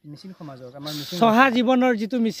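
A person speaking, with a drawn-out hissing 's' or 'sh' sound about a second in.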